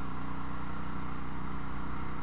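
Walk-behind tractor (motoblock) engine running with a steady, even drone.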